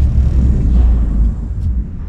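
Deep low rumble from a cinematic boom hit in a trailer's sound design, dying away about one and a half seconds in.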